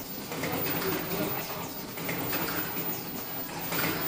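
Automatic disposable face mask production line running: a steady machine hum with rhythmic mechanical cycling, a stroke about once a second.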